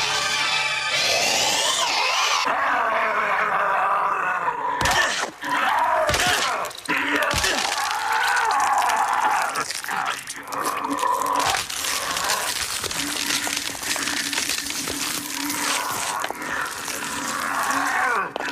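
Horror-film soundtrack: music mixed with wavering cries and groans, and three sharp cracking impacts between about five and seven and a half seconds in.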